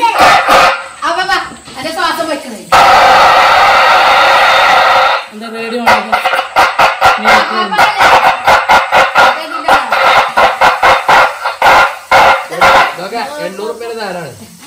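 A man's voice and noises blasted through a handheld megaphone, harsh and thin with no bass: a loud steady hiss lasting about two and a half seconds, then a long run of quick, evenly spaced bursts, several a second.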